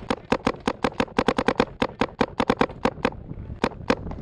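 Paintball markers firing in rapid strings of sharp pops, several shots a second, with a short pause about three seconds in before two more shots near the end.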